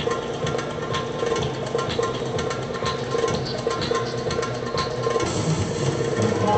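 Floor exercise music with a percussive beat and held tones, played over a loudspeaker in a large sports hall.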